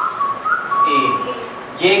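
Whiteboard marker squeaking against the board while a circle is drawn: one thin, high, steady squeal lasting about a second and a half, which jumps up in pitch briefly about half a second in.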